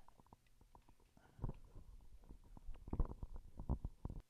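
Irregular soft thumps, knocks and clicks of handling noise as the recording phone is moved about, the heaviest about a second and a half in and again near the end.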